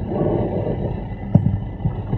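A pause in speech over video-call audio: a low, noisy background with a brief faint hiss in the first half and a single sharp click about two-thirds through.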